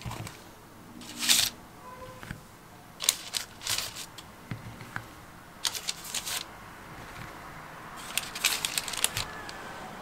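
Baking parchment on a metal tray rustling in several short bursts as hands set shaped bread dough down on it.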